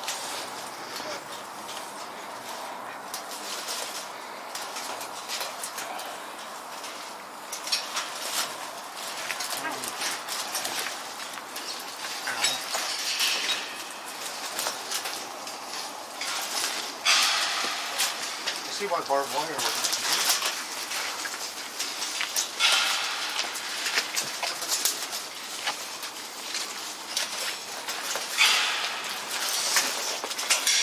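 Footsteps and the rustle of clothing and undergrowth as people move on foot, with scattered knocks and several louder rustling bursts, and a brief low voice partway through.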